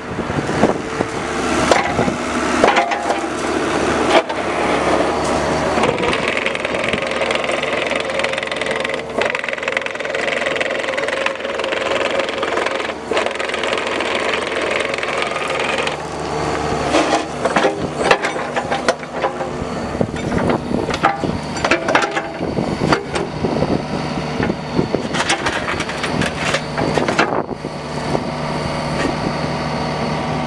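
Kubota KX71-3 mini excavator travelling on rubber tracks over gravel: the diesel engine runs steadily under frequent crunching of stones and knocks from the undercarriage. The right track makes a popping, not-quite-smooth noise, which the seller takes for something out of adjustment or a bearing.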